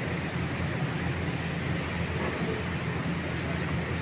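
A steady low mechanical hum with an even hiss over it, like machinery running in the background, with no distinct tool strikes.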